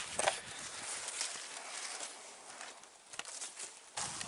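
Footsteps on dry, stony ground through brush, making irregular scuffs and clicks.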